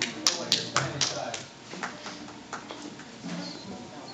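Scattered handclaps from a small audience, a few sharp claps in the first second thinning out to odd single claps, with low voices murmuring underneath.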